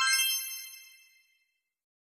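A single bright, bell-like chime sound effect, struck once and ringing with many high overtones, fading away within about a second.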